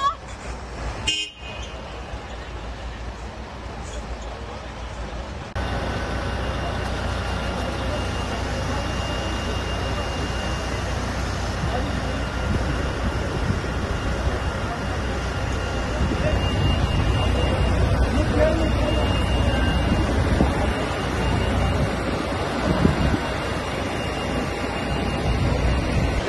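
Street noise at a building fire: fire engines and traffic running, with voices of onlookers. A few seconds in, a cut makes it louder, and a steady horn-like tone holds through most of the rest.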